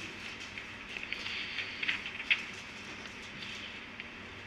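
Faint rustling and a couple of soft ticks over steady room hiss: Bible pages being turned while the passage is looked up.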